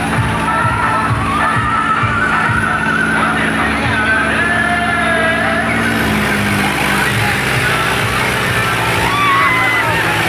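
Tractor engine running and revving through a shouting crowd, over loud music with a heavy, regular beat that drops away about halfway through.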